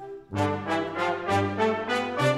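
Concert band playing a waltz. After a brief break about a quarter second in, the full band comes back in loud, with brass to the fore over held bass notes and accented chords about three a second.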